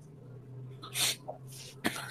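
A short, noisy breath from a man about a second into a pause in his speech, much quieter than his talking, with a faint click just before he speaks again. A low steady hum runs underneath.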